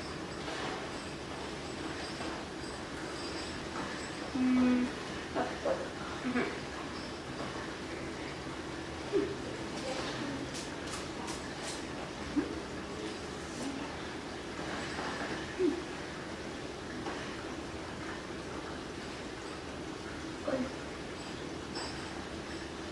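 Low room noise with faint, scattered mouth and handling sounds from biting and working an Oreo cookie. About ten seconds in there is a quick run of four sharp clicks.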